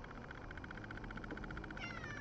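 Domestic cat meowing once near the end, a cry that falls in pitch.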